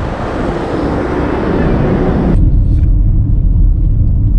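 Roadside traffic noise with cars passing. About two-thirds of the way in it cuts off suddenly to the low, steady rumble of a car cabin on the move.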